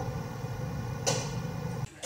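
Low steady hum with faint hiss, and a brief rushing noise about a second in; it cuts off suddenly near the end.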